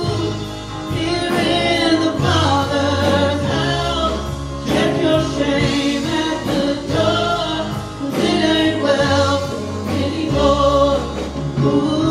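A live church worship band playing a gospel worship song: several voices singing together over electric guitar and drums, with long low bass notes underneath and regular cymbal and drum hits.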